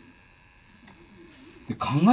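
Near-quiet room tone with a faint, brief murmured vocal sound, then a man starts speaking near the end.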